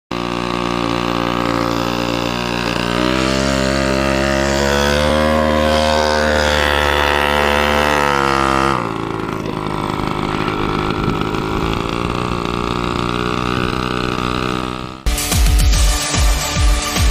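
Mini chopper motorcycle's small engine running and revving, its pitch rising in steps over the first few seconds and then holding. The sound turns rougher after a cut about nine seconds in. Electronic music with a heavy beat starts suddenly about a second before the end.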